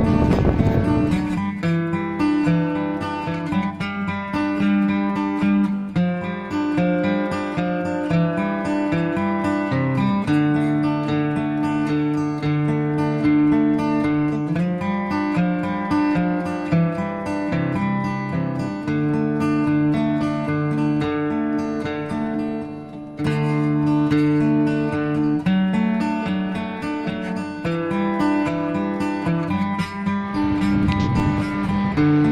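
Acoustic guitar background music, strummed and picked chords that change about every second. A rushing noise fills the first second or so, most likely wind and spray from the waterfall on the microphone, before the guitar takes over.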